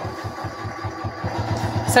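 Sewing machine running as it stitches binding onto a quilt: a steady motor hum with a quick, even knock of the needle.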